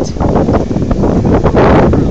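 Strong wind buffeting the microphone: a loud, rough rumble that swells in a gust near the end.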